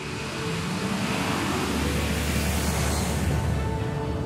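Jet roar of a Boeing 747 taking off and climbing away, a rushing noise that swells to a peak around the middle, with a deep rumble building from about halfway. Background music with sustained notes plays underneath.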